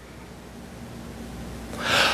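A man's sharp, audible intake of breath near the end, before he speaks again. Before it there is only a low steady room hum.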